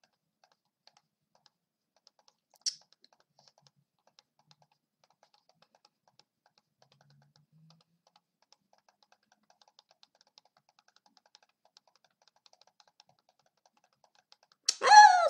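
Faint, rapid computer mouse clicks, several a second and unevenly spaced, as squares are clicked one after another in a timed drill. One louder click comes a little under three seconds in.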